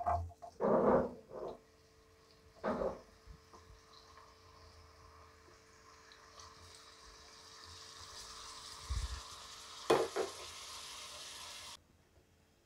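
Chopped onions and tomatoes dropped into hot oil in a non-stick frying pan, with a few knocks and scrapes as they go in, then the oil sizzling, growing steadily louder. A couple of sharp knocks come about ten seconds in, and the sizzling cuts off suddenly just before the end.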